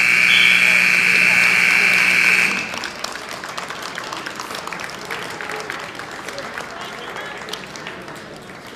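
Scoreboard clock buzzer sounding once, a steady tone of about two and a half seconds that cuts off suddenly, marking the end of the wrestling match. Crowd noise with scattered clapping follows.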